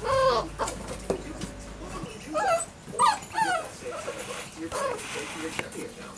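Young puppies whining and yelping: a handful of short, high calls, each falling in pitch.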